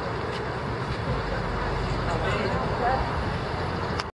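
Street ambience: a steady rumble of passing traffic mixed with the indistinct chatter of several people close by.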